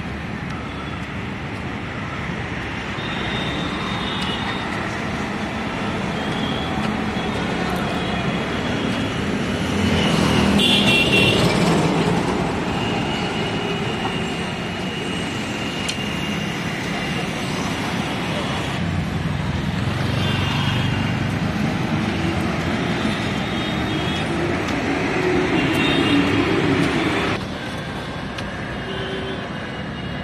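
Busy city road traffic heard from a moving vehicle: engines and tyre noise, swelling twice as vehicles close in and pass, with a sudden drop in level near the end.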